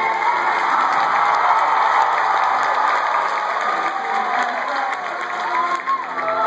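Audience applauding and cheering, with a few whoops, after a song ends; music and singing start again near the end.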